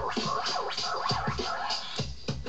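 Vinyl record being scratched on a turntable, the record pushed back and forth in quick sweeps and chopped at the mixer, over a drum beat with regular low thumps.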